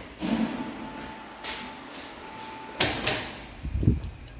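Glass sliding door being slid open along its track, with a faint thin squeal as it rolls and a sharp knock about three seconds in.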